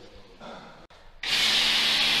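A car-wash spray lance starts suddenly about a second in, spraying cleaning foam onto a car's AC condenser with a loud, steady hiss. Before it, only a faint click.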